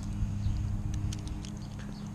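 A few light metal clicks from a leash snap being clipped onto a dog's chain collar, over a steady low hum.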